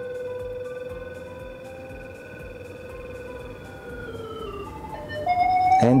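Ground scanner pinpointer app giving a steady electronic signal tone while the reading shows a hollow space. The tone steps down in pitch about four seconds in, and just before the end a louder, higher tone takes over as the reading swings toward a metallic object.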